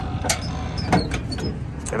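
Sharp plastic clicks and knocks as a plastic wheel-well cover is handled and fitted on a box truck, over a steady low rumble.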